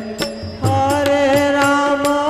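Devotional chanted singing over a steady percussion beat of about four strokes a second. After a brief dip a new held sung note begins just over half a second in.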